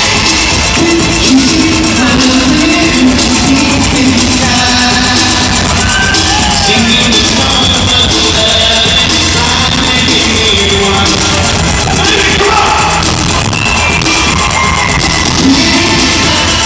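Live band music with a singer, played over the stage sound system and heard from the audience seats of a large arena; it runs loud and unbroken.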